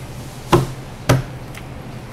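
Two sharp knocks about half a second apart, over a steady low room hum.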